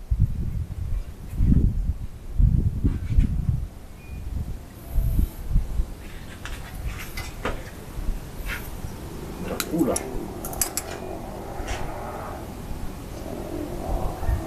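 Hands working bonsai wire and tools around the twigs: low rumbling bumps in the first few seconds, then a string of sharp clicks and snips from the wire and cutters in the middle.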